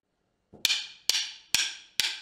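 Two drumsticks clicked together four times, evenly spaced about half a second apart, counting in the beat after a half-second of silence.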